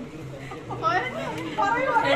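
Chatter: several people talking over one another, quiet at first and louder from about halfway through.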